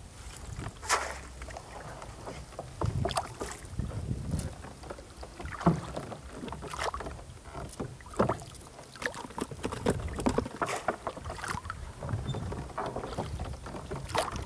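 A cast net being handled and thrown from a small boat: irregular small knocks, rustles and water splashes as the wet net and its weighted edge are gathered, swung and flung out over the water, with a low rumble of wind on the microphone.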